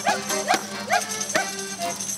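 Voices chanting 'Спій!' ('Sing!') in a steady rhythm, a short rising shout about twice a second, over folk-band accompaniment with held accordion notes.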